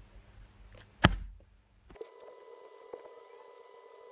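A single sharp click about a second in, followed from about two seconds in by a faint steady electronic hum with a thin high tone.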